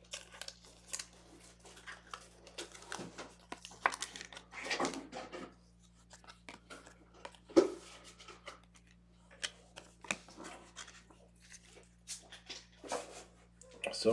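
Trading cards being handled and sorted by hand: irregular short snaps and rustles of card stock sliding against card stock, with one sharper tap about halfway through.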